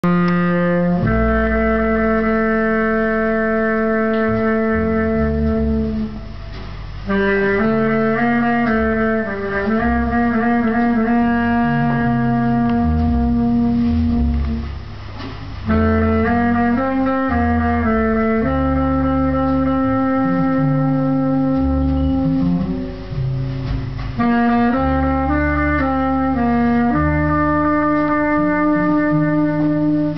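A slow jazz ballad played live, with a low melody line of long held notes in phrases over a double bass line.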